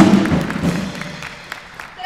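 A student jazz big band's short full-ensemble hit with drums, cut off sharply with a final accent. It then rings out in the hall and fades over about a second and a half, with a few scattered knocks or claps.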